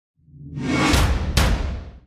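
Produced title-card sting: a whoosh swells up over a low rumble, with two sharp hits about a second in and less than half a second apart, then fades out.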